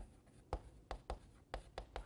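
Chalk writing on a chalkboard: a string of faint, short taps and scratches, about six, as letters are formed.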